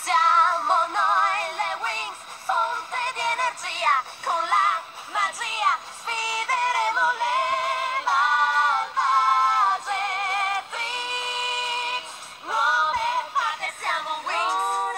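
High singing voices layered in harmony with no instruments, an a cappella arrangement; the sustained notes waver with vibrato. The singing breaks off briefly near the end, where there is a short low knock.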